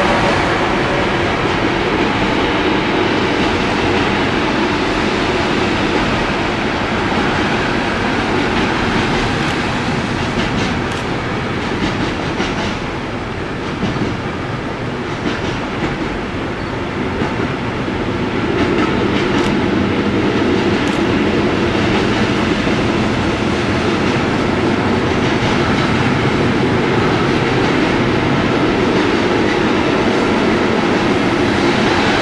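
Freight train of intermodal wagons carrying road trailers rolling past close by, a steady rumble of wheels on rails. It dips slightly quieter for a few seconds midway, then carries on as before.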